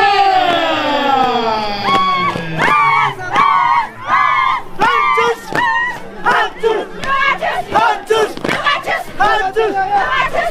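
Carnival dancers and crowd shouting: one long cry that falls in pitch, then a run of short, high, rhythmic calls about twice a second, with sharp clicks mixed in.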